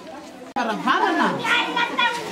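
Chatter of many children's voices talking and calling out over one another. About half a second in the sound cuts out for an instant and returns much louder and closer.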